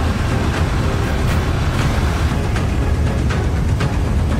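Steady low rumble of street traffic and motorcycle engines, mixed with background music.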